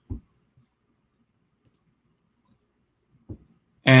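Near silence, broken by two short, faint clicks: one right at the start and one about three seconds in.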